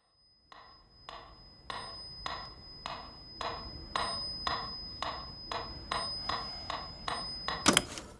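Mechanical metronome ticking steadily, a little under two beats a second, over a thin high steady tone. Near the end a loud sharp crackle cuts it off.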